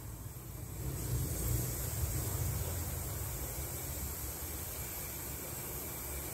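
Granulated sugar poured from a glass into a stainless steel saucepan onto cocoa powder: a soft, steady hiss that starts about a second in.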